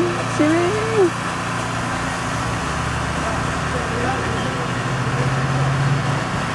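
A steady low motor hum under constant background noise, of the kind an idling vehicle engine makes.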